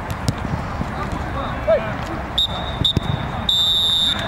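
Referee's pea whistle giving two short blasts and then a long one, a steady shrill tone, starting about halfway through.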